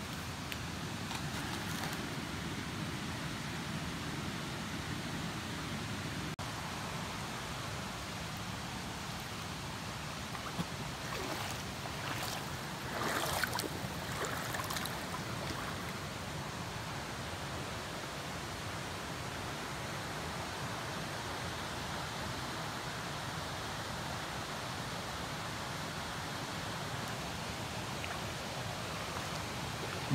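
Steady rushing of a mountain creek flowing over rocks, with a few brief louder bits of noise around the middle.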